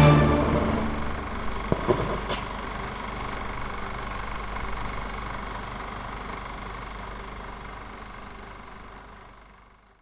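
Background music ending: a loud passage stops at the outset and leaves a long fading tail, with a few sharp hits about two seconds in, that dies away to silence.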